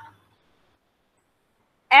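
Near silence between a woman's spoken words: her voice trails off at the very start and starts again right at the end.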